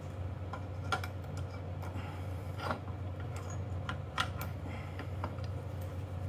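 A welding ground clamp being handled and clamped on, giving a few scattered sharp metallic clicks and knocks over a steady low hum.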